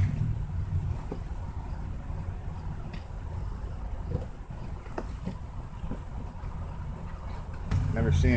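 Cardboard shipping box being opened, a few faint taps and scrapes as the flaps are cut and pulled back, under a steady low rumble.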